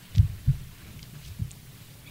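A few short, dull, low thumps: two close together near the start and a fainter one about a second later, over a low steady hiss.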